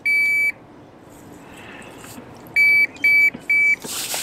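Handheld digital fish scale beeping while a bass hangs from it being weighed: one half-second beep at the start, then three short beeps in quick succession, about two a second, near the end.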